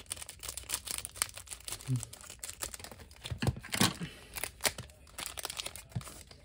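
Foil trading-card booster pack being cut open with scissors and handled: many quick crinkles and crackles of the foil wrapper, loudest a little past the middle.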